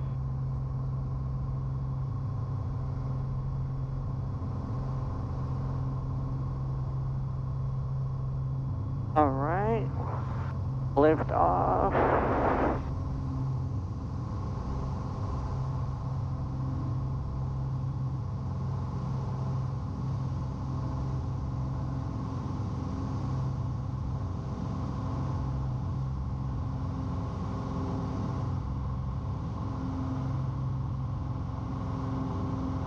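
Piper Saratoga's six-cylinder piston engine and propeller at full takeoff power, heard from inside the cockpit. It holds a steady drone with an even low hum through the takeoff roll, lift-off and initial climb.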